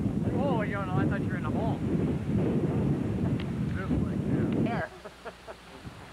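Strong wind buffeting a camcorder microphone in a loud, low rumble that cuts off abruptly near the end, leaving a few faint knocks.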